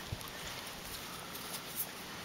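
Shallow creek water running steadily over a gravel bed, with a couple of small splashes from a hand moving in the water, one just after the start and one near the end.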